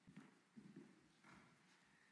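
Faint footsteps: a few soft, irregular steps in near silence.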